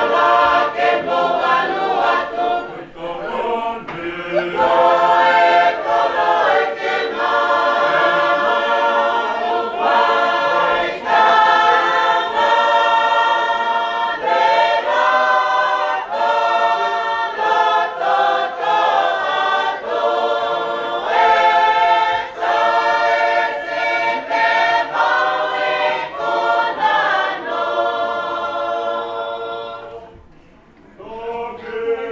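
A large mixed congregation singing a Tongan hymn unaccompanied in several-part harmony, in long held phrases that break every few seconds.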